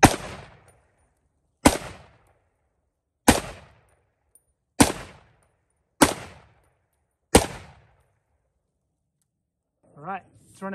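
AR-style .308 semi-automatic rifle firing six single shots at an unhurried pace, about one every second and a half, each crack followed by a short echo. It stops a little over seven seconds in. It fires each round with no stoppage, cycling reliably on PMC Bronze ammunition.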